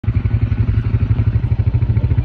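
ATV engine idling with a rapid, even throb.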